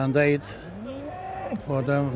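Shorthorn cattle mooing once: a short call that rises, holds steady, then drops away.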